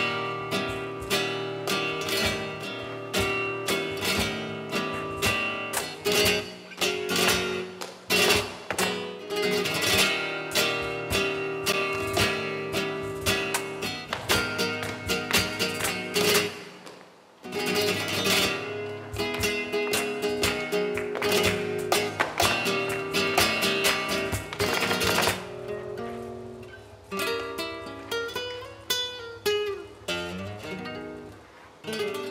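Flamenco guitar playing: fast, dense strummed chords with held notes, broken by a brief pause about seventeen seconds in. It turns to quieter, sparser picked notes stepping downward near the end.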